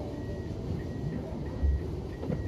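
Siemens ULF A1 tram's warning beeper sounding a series of short high beeps, about two a second, over the low hum of the stopped tram, with a dull low thump near the end.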